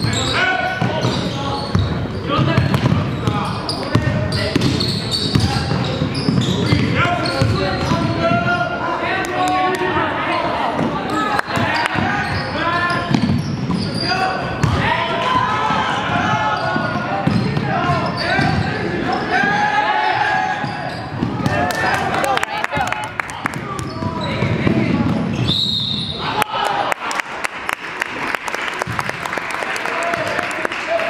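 Gym game noise: many voices of players and spectators talking and calling out over a basketball bouncing on the hardwood floor, with repeated short knocks. Near the end a short, high referee's whistle stops play, here for a foul that sends a player to the free-throw line.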